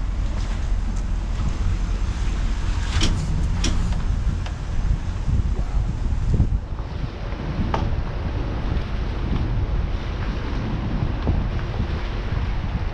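Wind buffeting the microphone over the low, steady rumble of a car driving slowly, with a few sharp clicks or knocks about three seconds in and again near eight seconds.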